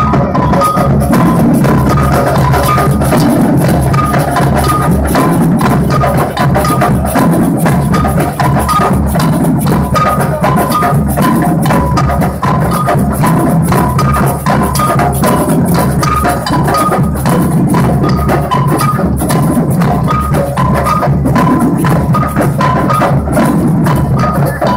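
Street parade drum band playing a steady, driving rhythm on bass drums and hand-held drums, with a short high two-note figure repeating over the beat.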